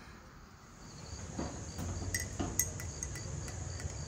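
Insects chirping: a steady high trill with a faint pulsed chirp repeating several times a second, coming in about a second in after near silence, with a few light knocks.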